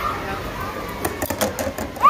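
A ring spinning down around a shallow white bowl, chattering against the surface in a quick run of clicks in the last second as it settles.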